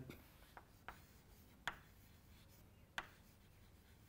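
Faint chalk writing on a chalkboard: a few short, sharp taps and scratches as letters are chalked, the loudest two about a second and a half apart.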